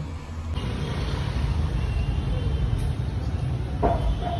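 City street traffic on a wet road: a steady rumble of passing vehicle engines and tyre noise, with a brief voice near the end.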